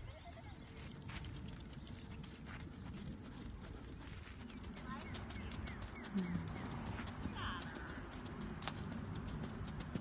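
A horse's hoofbeats on arena sand as it trots and canters, a run of soft repeated thuds.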